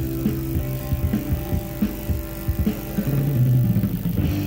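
Live blues-rock band playing without vocals: bass, electric guitar and drums, with sustained low bass notes and regular drum hits.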